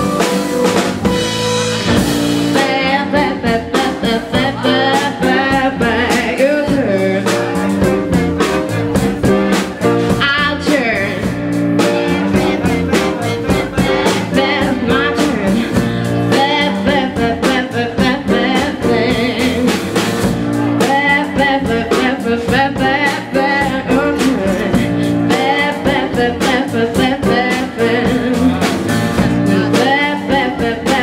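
Live soul and rhythm-and-blues band: a woman singing into a microphone over grand piano, electric bass and drum kit.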